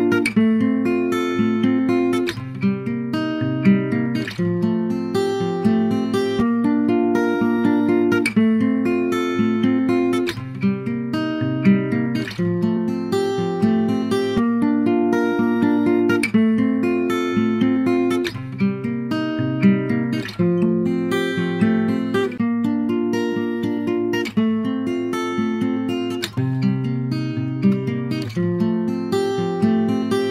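Background music: acoustic guitar picking and strumming in a steady, repeating pattern.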